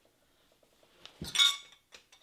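Small ceramic pieces clinking against tableware. After a few faint taps, there is one sharp clink a little over a second in, which rings briefly.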